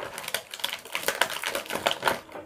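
Small plastic Ugglys Pet Shop toy figures clicking and clattering together as they are gathered up and put away, a quick run of many light clicks.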